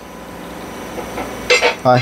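Light metallic clinking and handling noise from a hand on the metal casing of a stopped Kubota Z482 diesel engine, with a sharper clink about one and a half seconds in.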